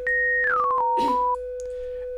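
Two pure sine tones: a steady tuning-fork reference tone on the note B holds throughout, while a 3x Osc sine tone in FL Studio enters higher and steps down note by note as the note is dragged down the piano roll, then cuts off about two-thirds of the way in. A few soft clicks come during the steps.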